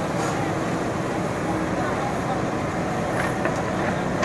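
Diesel engine of a backhoe excavator running steadily as its bucket digs into soil and broken road, with people talking around it.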